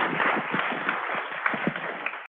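Audience applauding: many hands clapping together in a steady, dense patter that cuts off just after the end.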